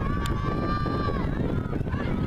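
A spectator's long, drawn-out yell of encouragement to relay runners, one high note held steady for over a second and then dropping off, over a constant low rumble of wind on the microphone; a single sharp click comes about a quarter second in.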